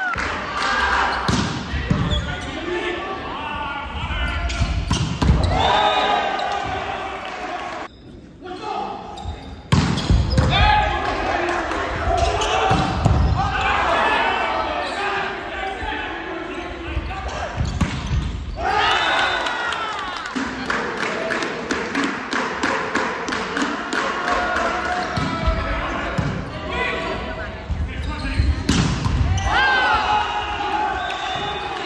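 Volleyball game sounds in an echoing gymnasium: players and spectators shouting and calling, with the thumps of the ball being struck and hitting the floor. There is a brief lull about eight seconds in.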